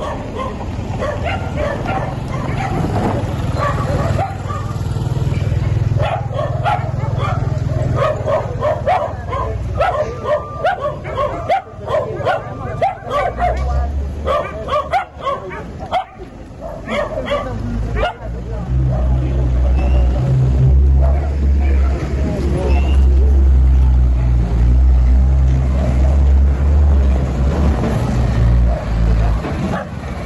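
Dogs barking repeatedly over people's voices. From about 18 seconds in, the deep steady engine rumble of a heavy military truck running close by comes in.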